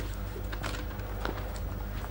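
Footsteps on a studio stage floor: a few soft, irregular steps as a man walks away, over a steady low hum in the old recording.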